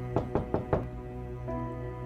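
Four quick knocks on a door, about five a second, over background music of sustained bowed strings.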